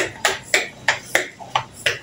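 Hand-pump plastic pressure sprayer going off in a quick run of short, sharp squirts, about three a second.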